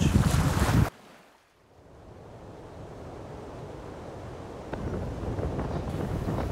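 Strong wind buffeting the microphone with a deep rumble, cutting off abruptly about a second in. A faint, steady rushing noise then fades in and grows slowly louder.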